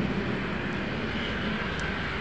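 Steady outdoor rushing noise with no distinct events in it.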